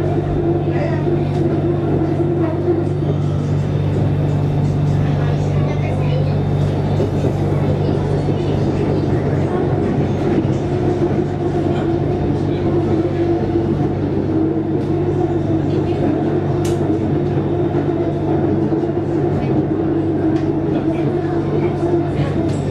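Steady droning hum and rumble inside a moving BTS Skytrain car, the electric train's running noise holding level throughout.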